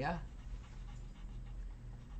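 Colored pencil scratching back and forth on paper, pressed hard to shade a dark area in blue, over a steady low hum.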